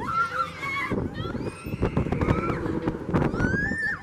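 Riders screaming and shrieking on a swinging fairground ride: several high cries that rise and fall in pitch, the longest rising one near the end, over the rush of wind and the ride's rumble.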